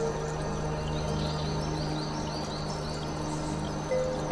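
Slow ambient meditation music with a steady low drone and long held tones. From about a second in, a run of about six short high chirps repeats evenly, roughly three a second.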